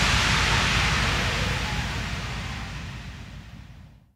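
A hissing noise wash with a low rumble under it, fading out steadily to silence by the end: the decaying tail of a logo sound-effect hit.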